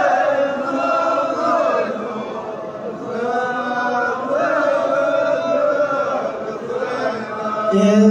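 A group of men chanting in unison in long, held, wavering phrases. The chant eases briefly about two to three seconds in, then swells again.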